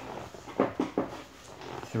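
Bubble-wrap and plastic packaging crinkling as packets are handled, with a few short crackles about half a second to a second in.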